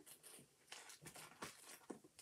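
Near silence: room tone with a few faint, short rustles and clicks.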